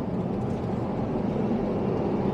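Steady low cabin noise of an Airbus A350-900 airliner in flight: an even hum of engine and airflow noise heard from inside the passenger cabin.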